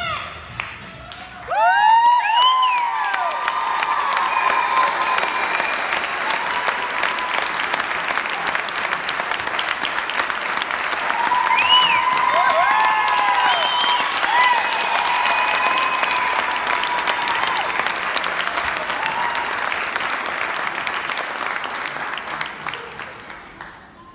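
Audience applauding, breaking out suddenly about a second and a half in, with a few voices whooping over it. The applause fades out near the end.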